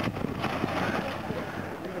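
Rock-crawling 4x4's engine running low and steady under load as it climbs a loose rock slope, with a couple of sharp knocks near the start.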